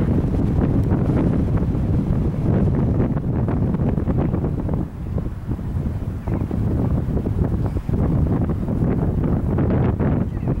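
Wind buffeting the camera's microphone: a loud, gusty low rumble that eases briefly about five seconds in.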